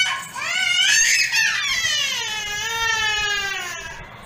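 A small girl crying and screaming in a tantrum to get a mobile phone: two long, high-pitched wails, the second drawn out and falling in pitch as it fades near the end.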